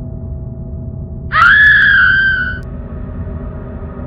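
A single loud, high scream lasting just over a second, shooting up in pitch at its start and then held, over a low droning horror-score background.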